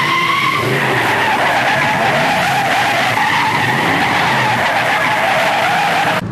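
Car tyres screeching in one long, continuous squeal. The pitch dips slightly about a second in and then holds steady.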